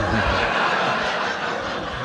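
An audience laughing together at a punchline, loudest at the start and slowly dying away.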